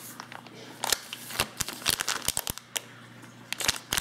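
Thin clear plastic bag crinkling and crackling as hands pull it off a block, in irregular sharp crackles.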